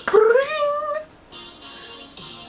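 A woman's short, high laugh rising in pitch, then a band's pop-rock song playing quietly in the background.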